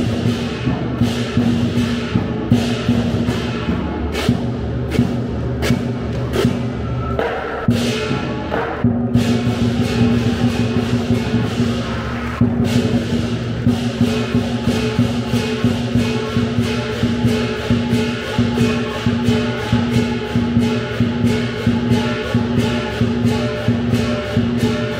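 Lion dance percussion ensemble: a large drum beaten in a fast, steady rhythm over ringing cymbals and gong. The pattern changes briefly about seven to nine seconds in.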